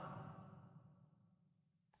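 Near silence, with the faint fading tail of a spoken word dying away in the first half second.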